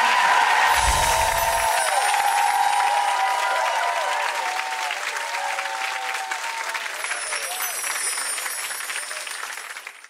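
Studio audience applauding, fading out near the end.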